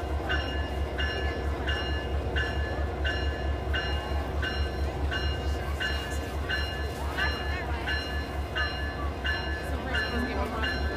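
Diesel locomotive rumbling past slowly, with a bell ringing steadily at about three strokes every two seconds over it.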